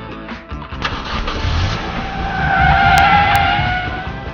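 A car speeding away with its tyres squealing. The screech wavers in pitch and swells to its loudest about three seconds in, over a low rumble.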